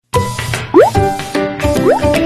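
Channel intro jingle music with two quick rising pitch swoops about a second apart.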